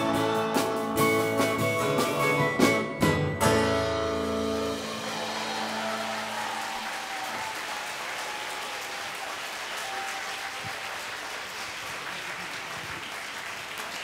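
A live band and singers end a song on several sharp final strikes and a held chord, about four to five seconds in. Audience applause follows and carries on steadily.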